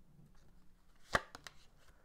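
Tarot cards handled as a card is drawn from the deck: one sharp snap a little past a second in, followed by two lighter clicks.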